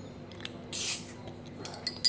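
Beer bottle cap coming off, with a short hiss of escaping carbonation gas about a second in, then a few light clicks near the end.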